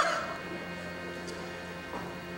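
Theatre orchestra holding a sustained chord at the start of a musical number, with a brief loud vocal cry from a performer at the very start.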